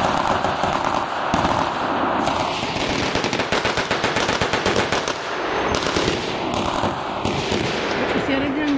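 Blank-firing guns in a mock battle: rapid strings of automatic fire mixed with single rifle shots, echoing around the station. A rushing noise runs under the shots in the first couple of seconds and again near the end.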